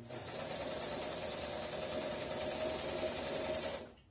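Sewing machine running steadily at speed under the foot pedal, driving its bobbin winder to wind thread onto an empty bobbin. It stops abruptly near the end.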